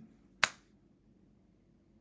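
A single sharp finger snap about half a second in, then quiet room tone.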